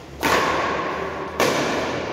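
Two sharp badminton racket hits on a shuttlecock, about a second apart, each echoing on in a large hall.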